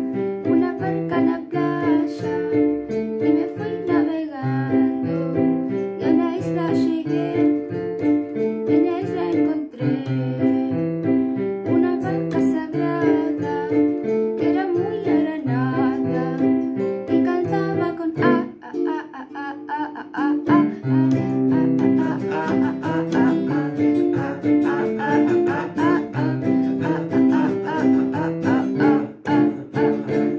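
Electronic keyboard played with both hands: chords over a regular bass line. About two-thirds of the way in it dips briefly, then carries on with a busier pattern.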